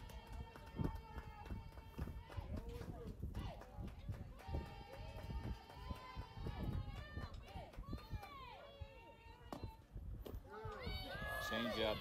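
Voices of softball players and spectators calling out and cheering across the field between pitches, some calls drawn out in long held notes.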